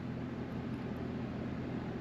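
Steady outdoor background noise: an even hiss with a faint low hum underneath, unchanging throughout.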